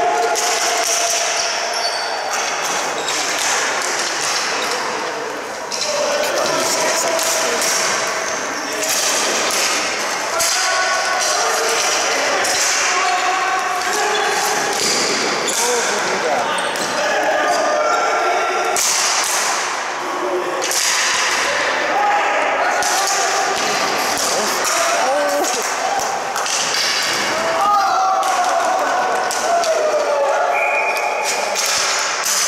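Ball hockey play echoing in an arena: repeated clacks and knocks of sticks and the ball on the concrete floor and boards, with players calling out indistinctly, louder near the end.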